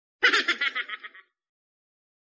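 "Gahaha" laugh sound effect: a burst of rapid, high-pitched giggling about a second long that starts a moment in and cuts off abruptly.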